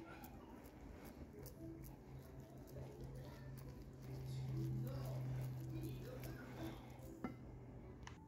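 Wooden spoon stirring a thick, crumbly banana-bread batter of almond and buckwheat flour in a glass bowl, with faint scraping and light clicks of the spoon, over a steady low hum that grows louder in the middle.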